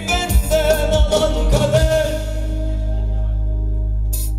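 Live band of electric guitar, long-necked lute and drum kit playing the closing bars of a Turkish pop song, with a male singer drawing out the last note. A few drum hits come in the first couple of seconds, then the band holds one long final chord.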